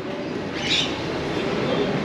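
Steady background ambience, an even noisy hiss, with one short high chirp about two-thirds of a second in.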